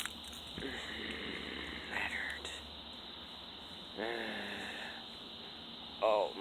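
Insects trilling steadily in the background, fading in and out. A short wordless vocal sound like a grunt comes about four seconds in.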